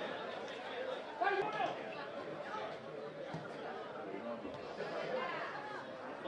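Several voices calling out and talking at a football match, overlapping, with one louder shout about a second in.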